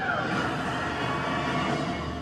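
Film trailer soundtrack: music mixed with action sound effects, a dense steady rush with a falling whistle-like tone just at the start, leading into the title card.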